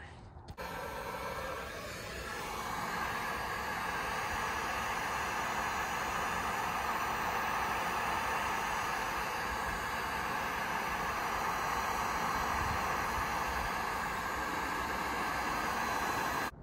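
Electric heat gun running, its fan blowing a steady rush of hot air onto a faded plastic fairing. It switches on about half a second in and builds up over the first couple of seconds, then holds steady.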